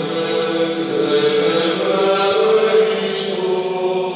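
Background choral chant music: voices singing long held notes that change pitch slowly.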